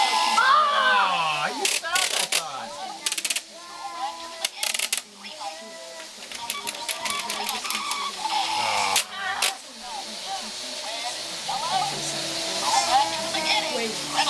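Young children's voices chattering and babbling, with sharp plastic clicks now and then from a toy car launcher race track being pressed. Most clicks come in the first five seconds, with two more close together about nine seconds in.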